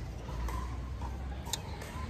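Outdoor street background: a steady low rumble, with one sharp click about one and a half seconds in.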